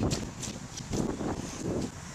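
Wind buffeting an outdoor microphone in irregular low gusts, with a few brief knocks of handling noise from a handheld camera.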